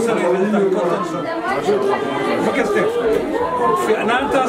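Speech only: men talking, with several voices overlapping.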